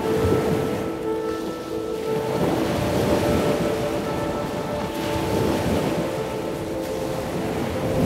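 Ocean surf washing in and out as a steady rush, under a held ambient music drone.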